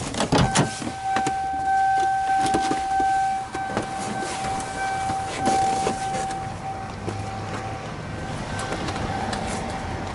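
A car's warning buzzer giving a steady tone as the driver's door is opened, clear for about six seconds and fainter after, with clunks and knocks from the door and the person climbing out.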